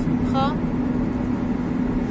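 Engine and road noise inside a moving Opel car's cabin, a steady low hum with one constant drone while cruising at road speed.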